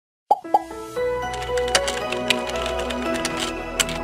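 Intro jingle for an animated logo: two quick pops a moment after silence, then bright music of held notes with crisp clicks and taps scattered through it.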